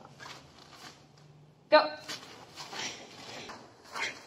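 A single short, loud shouted command, "go", a little under two seconds in, starting a karate kata; before it the room is quiet with a faint low hum.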